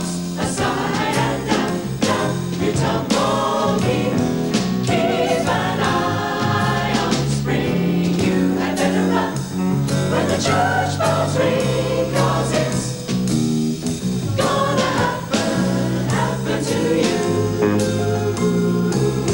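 Mixed jazz choir singing a fast, wordless scat passage in close harmony, the voices moving in short, clipped syllables.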